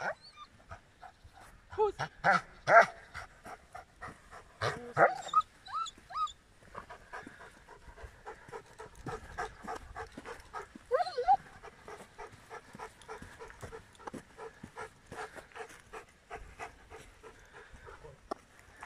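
Giant schnauzer panting quickly and steadily as it walks at heel, in fast even breaths through most of the stretch. Earlier, a person whistles three short rising notes and a voice speaks briefly.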